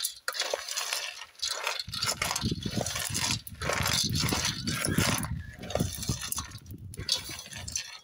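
Roasting palm kernels rattling and clinking against a steel pot as they are stirred with a wooden stick over a wood fire. A low rumble joins in about two seconds in and fades shortly before the end.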